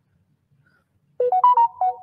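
A short electronic notification chime sounds about a second in: a quick run of clear notes that steps up and then back down, lasting under a second.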